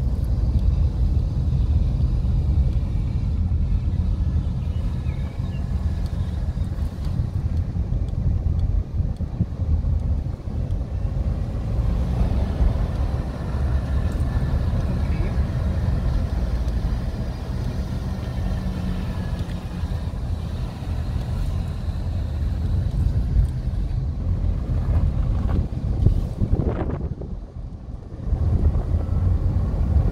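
Car running along the road, heard from inside the cabin: a steady low rumble of engine and road noise, briefly quieter a couple of seconds before the end.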